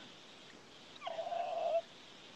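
A man's drawn-out, high-pitched laugh, starting about a second in and lasting under a second, heard over a video-call connection.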